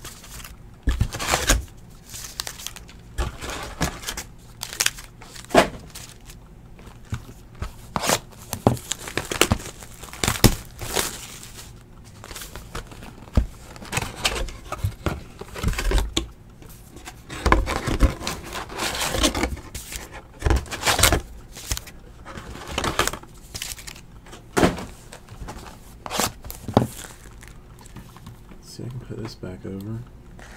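Cardboard card boxes and wrapped trading-card packs being handled: irregular taps, knocks and short rustles as the packs are pulled out of the boxes and stacked.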